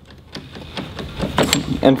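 Irregular clicks and rattles of a Rite-Hite turret's transducer adapter being worked loose and pulled down off the turret's stainless steel down tube. The knocks come thickest a little past the middle.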